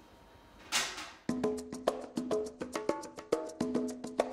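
Background music comes in: a short whoosh just under a second in, then upbeat percussive music with woody pitched strikes at about five a second.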